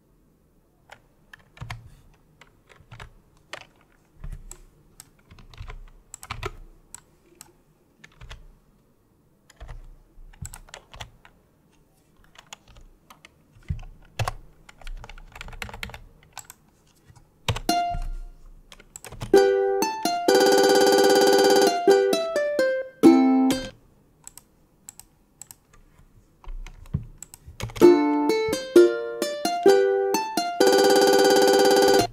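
Computer keyboard keys tapped in short runs of clicks. From a little past halfway, Guitar Pro plays back short passages of the ukulele tab in a synthetic plucked-string tone, including chords held steady for about two seconds, with more key taps in between.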